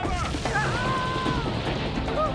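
Action-scene soundtrack: an explosion at the start, its rumbling blast noise carrying on under dramatic background score music with a held tone through the middle.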